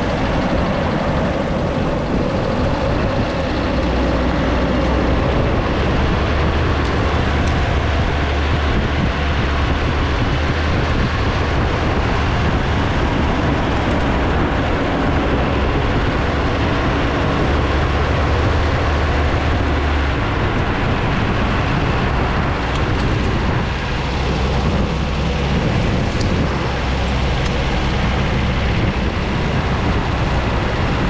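A steady rush of wind on the microphone and wheels rolling on asphalt at downhill speed.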